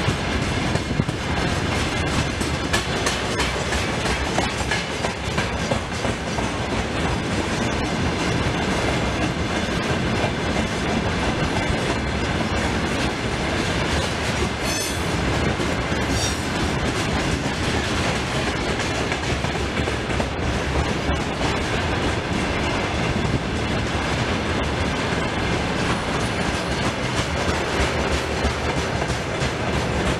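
Freight train of tank wagons rolling past, steel wheels clattering steadily over the rail joints, with two brief high wheel squeaks about halfway through.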